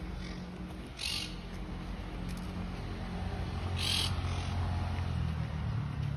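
Outdoor street ambience: a steady low traffic hum that swells from about three seconds in, with two short high bird chirps, about a second in and about four seconds in.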